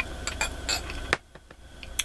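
A person sipping water from a clear drinking vessel, with a few short clicks and clinks from the vessel.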